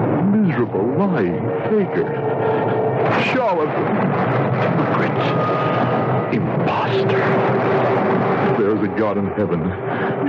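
Radio-drama storm sound effect: wind whistling and howling in rising and falling glides over a constant rushing noise, with low rumbles like thunder.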